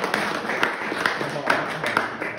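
A small audience clapping, with laughter and voices mixed in, as a prize is announced.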